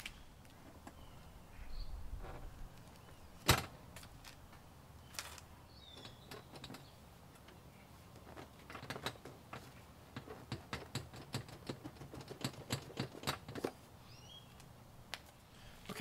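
Hex wrench working the screws of a scooter's seat backrest bracket: one sharp knock about three and a half seconds in, then a run of irregular small metallic clicks and ticks for several seconds.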